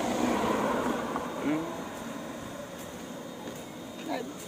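A person chewing a crunchy corn chip close to the microphone, the crunching loudest in the first second or so and then fading.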